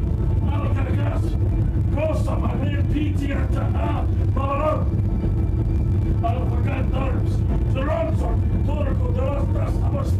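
Indistinct, muffled voices talking over a loud, steady low rumble.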